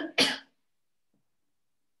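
A woman coughs twice in quick succession, her hand over her mouth.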